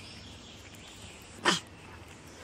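A cat at the food tub gives one short, sharp, explosive sound about one and a half seconds in, over quiet outdoor background.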